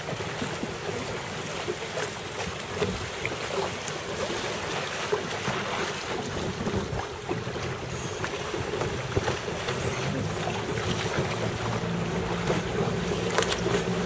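Wind buffeting the microphone over choppy open water, with water lapping and small scattered ticks. A steady low hum grows stronger over the last couple of seconds.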